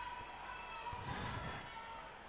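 Faint background ambience of an outdoor athletics stadium during a sprint race, a low hum with a faint steady tone and faint distant voices.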